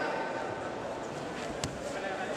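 Indistinct voices and hubbub in a large sports hall, with one sharp knock about one and a half seconds in.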